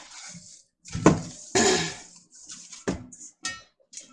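Kitchen handling noises as a cloth strainer bag is emptied and lifted from a plastic colander on a stainless stock pot. There are a couple of sharp clunks, about one second and three seconds in, with cloth rustling and light clatter between them.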